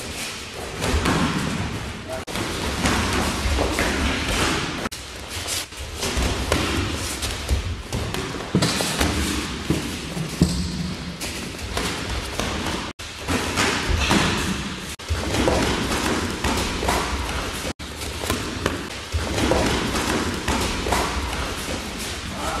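Gloved punches thudding into pads and a held strike shield, many blows in quick succession throughout.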